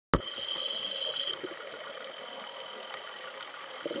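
Underwater ambience recorded from inside a camera housing: a steady hiss with scattered faint clicks. It opens on a sharp click, a high whine drops away about a second and a half in, and a lower rushing noise rises near the end.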